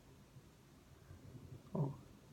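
Faint low rumble of a distant airplane, with one short vocal murmur from a man near the end.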